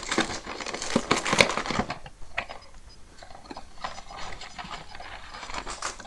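Cardboard Easter egg box being torn open and its packaging handled: a burst of sharp tearing and clicking crackles in the first two seconds, then quieter scattered crackling and rustling.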